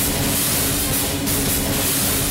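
Loud background music score with a held low note and bright, repeated crashing swells about once a second.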